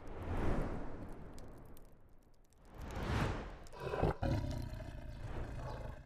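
Cinematic logo sound effect: two swelling, rushing whooshes about three seconds apart, then a sharp hit just after four seconds in followed by a low rumble.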